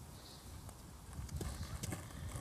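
Skateboard on asphalt: a low rolling rumble from the wheels, with a few sharp clacks of the board, one about two-thirds of a second in and two more near the end.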